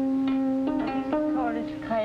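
Gayageum, the Korean 12-string zither, being plucked: long ringing string notes, with fresh notes a little under and a little over a second in, and some bending in pitch where the strings are pressed beyond the bridges.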